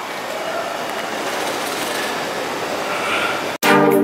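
Steady outdoor city background noise, an even hiss with no distinct events, cut off suddenly near the end by music with a beat.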